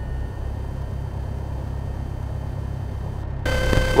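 Piper Cherokee's engine running at taxi power in the cockpit, a steady, muffled low drone. Near the end the sound changes suddenly, with an added hiss and a thin steady tone.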